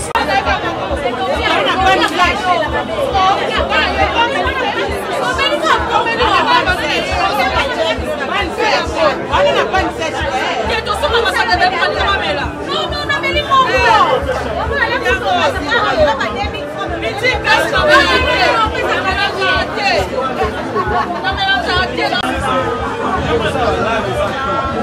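Loud chatter of many voices talking over one another, with music playing underneath.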